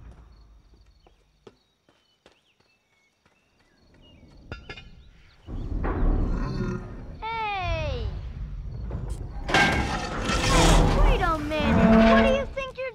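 Film sound effects of a giant robot pulling up and biting into steel railway track: heavy metal creaking and screeching over a low rumble. After a quiet start, the sound builds about five seconds in, with falling squeals partway through and the loudest crunching and grinding near the end.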